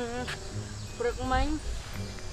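Khmer speech in two short phrases, one at the start and one about a second in, over a steady high insect buzz and low rumble.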